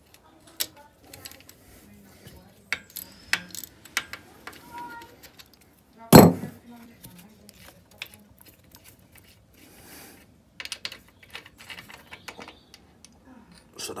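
Scattered small metallic clicks and clinks as a motorcycle transmission filler cap is unscrewed by hand, with one sharp knock about six seconds in.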